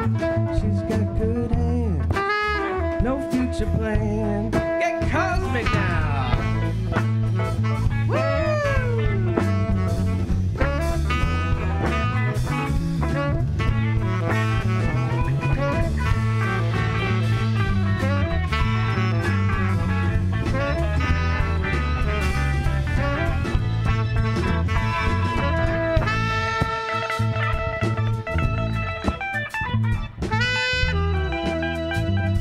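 Live band playing a blues-jazz number on electric guitars, keyboard, drums and saxophone, with notes bending and sliding in pitch about six to nine seconds in.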